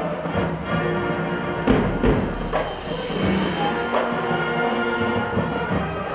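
High school marching band playing: held brass chords over percussion, with sharp drum and timpani strikes about two seconds in.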